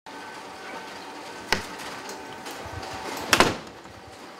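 A door being handled over steady office room noise: a sharp click about a third of the way in, then a quick cluster of loud knocks near the end.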